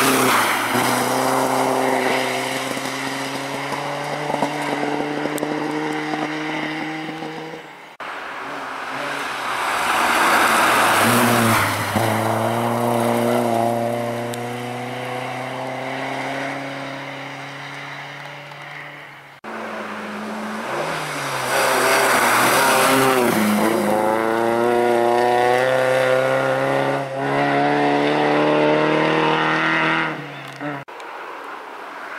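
Rally car engines running at high revs as cars pass on a snowy stage, in three separate passes cut together abruptly. The first is a Volvo 240 saloon rally car.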